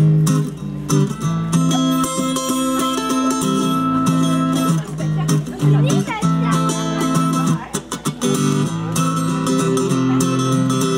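Amplified acoustic guitar strummed and picked in a steady groove, played live through PA speakers.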